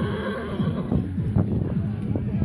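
A horse whinnying briefly near the start, a wavering high call, over background music.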